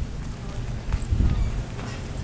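Footsteps on pavement, a few faint steps over a steady low rumble.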